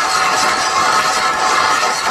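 An ice auger's blades grinding into lake ice as it is turned down to bore a fishing hole: a steady scraping grind.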